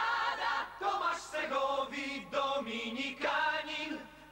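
A mixed chorus of men and women singing together, a string of held notes with short breaks between them.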